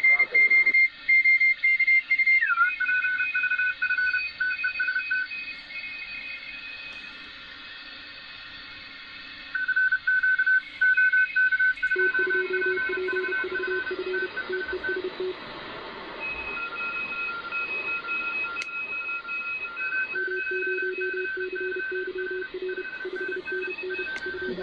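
Shortwave receiver audio of several Morse code (CW) stations on the 20-metre amateur band, keyed tones at different pitches sounding together over steady band hiss. One tone slides down in pitch about two seconds in as the receiver is retuned, and a lower-pitched station comes in about halfway through.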